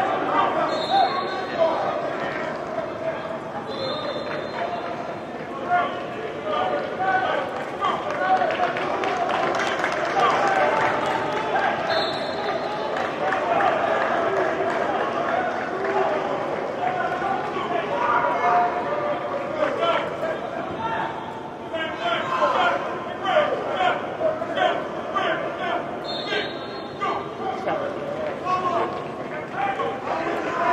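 Many overlapping shouting voices of football players and coaches during drills, echoing in a large indoor practice hall, with scattered sharp thuds and claps.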